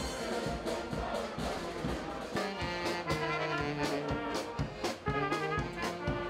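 A brass band playing a tune, with trumpets and trombones holding notes over a steady drum beat.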